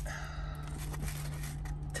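Steady low hum of a car's cabin, with faint handling noises as the food is lifted out of a foam takeout box.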